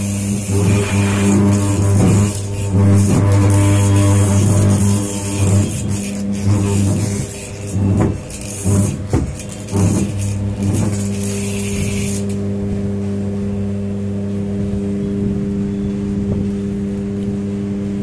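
Rotor-testing growler's electromagnet humming loudly and steadily at mains frequency, with a long motor rotor laid across its core. Until about twelve seconds in, the rotor being turned by hand on the core adds a harsher buzz and irregular clicks over the hum; after that only the steady hum remains.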